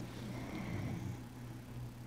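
Quiet room tone: a steady low hum with faint background noise.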